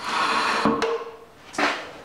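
Steel walk-behind-tractor track unit pushed across its wooden blocks and slid onto the axle post, metal grating on metal and wood. A long scrape comes first, then a sharp click, and a second shorter scrape near the end.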